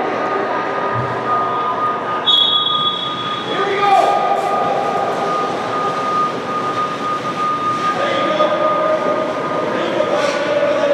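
Indoor ice rink ambience: a steady mechanical hum with one constant high tone, over muffled children's voices and held calls.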